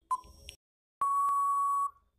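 Quiz countdown timer sound effect: a short tick just after the start, the last of a series a second apart, then about a second in a long steady electronic beep lasting almost a second, signalling that time is up.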